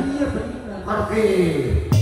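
Mostly a man's amplified voice speaking on stage, drawn out and falling in pitch toward the end, followed by a single sharp knock just before the end.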